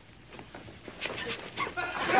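Studio audience beginning to laugh: faint scattered chuckles and small sounds that grow from about a second in and swell into full laughter right at the end.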